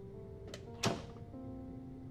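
A wooden door pushed shut: a faint click, then a single sharp thud just under a second in. Soft background music with held notes plays under it.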